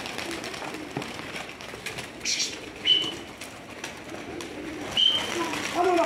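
A flock of domestic pigeons cooing and flapping as they take off and circle, with a brief burst of wing noise a couple of seconds in. Two short high-pitched notes sound about three and five seconds in.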